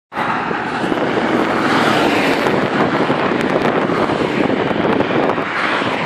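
Steady, loud rush of wind on the microphone while riding a bicycle along the road.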